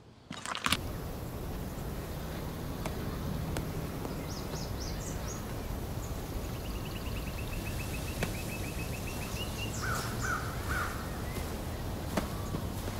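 Outdoor ambience: a steady low background with birds calling over it, a quick even trill in the middle and three short calls near the end.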